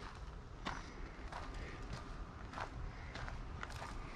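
Footsteps on bare dirt: a few faint, unevenly spaced steps, about one every second, over a low steady outdoor background.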